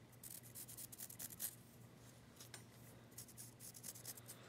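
Faint scratching of a pencil drawing a line on a basswood block, in a run of short strokes over the first second and a half, with a few more later.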